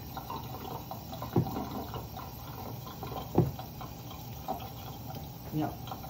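Kitchen tap running in a thin stream into a steel sink: a steady splashing hiss. Two short, sharper sounds stand out over it, about one and a half and three and a half seconds in.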